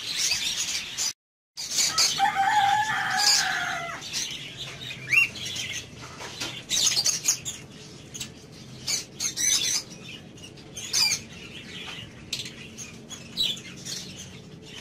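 Many small caged parrots, lovebirds, chirping and chattering in quick scattered calls. The sound drops out completely for a moment a little after one second in, and a longer, steadier call follows from about two to four seconds in.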